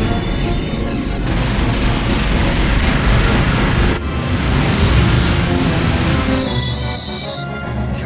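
Dramatic action score with loud rushing sound effects laid over it in two long stretches; the effects stop about six and a half seconds in, leaving the music thinner.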